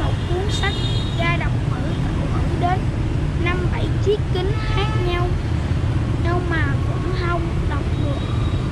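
A boy reading aloud in Vietnamese from a schoolbook, over a steady low rumble of street traffic.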